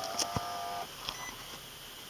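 Infiniti G37x dashboard warning chime: a steady electronic tone that stops about a second in, with a single click partway through. It sounds as the ignition is switched on with the push-button start.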